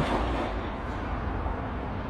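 Steady background noise picked up by a phone's microphone: a low rumble under an even hiss, with no distinct events.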